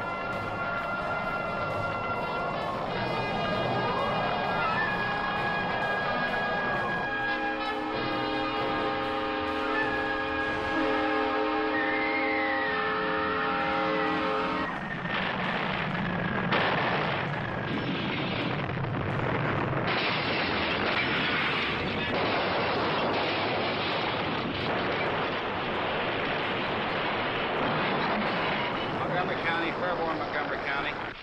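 A tornado striking a town. It opens with wavering tones that rise and fall over a roar, and a sustained horn-like chord from about seven seconds. From about fifteen seconds it becomes a dense, loud roar full of crashes and smashing debris.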